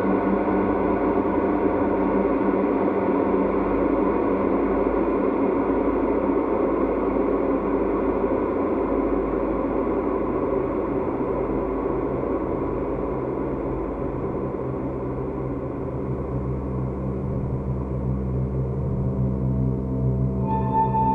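Ambient drone of many sustained, overlapping tones from a Novation Peak synthesizer played from a keyboard, layered with the bowed metal of a piezo-amplified DIY noisebox, all run through delay and reverb. The low notes grow fuller in the second half.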